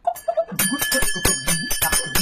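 A small bell ringing in fast repeated strikes, starting about half a second in, over a repeating vocal sound.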